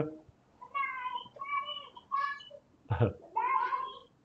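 A small child's high-pitched voice, faint and off-microphone, making several short squeaky utterances. A single knock sounds about three seconds in.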